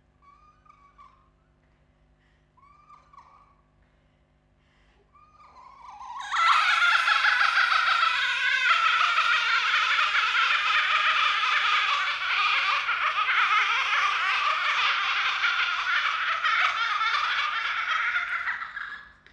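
A few faint, short, squeaky vocal sounds, then from about six seconds in a loud, dense laughter that holds steady and fades away at the end.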